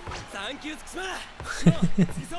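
Mostly speech: a man's short laugh over quieter anime character dialogue, with a few short thumps near the end.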